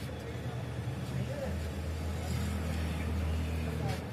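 A motor vehicle's engine running steadily, its low hum growing stronger about a second and a half in, with faint indistinct voices.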